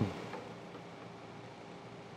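A brief low thump right at the start that dies away quickly, then a faint steady hiss.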